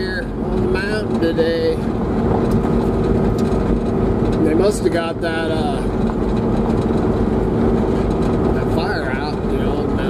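A vehicle driving a dirt road, heard from inside the cab: a steady engine and road drone. Brief bits of a man's voice come near the start, about halfway and near the end.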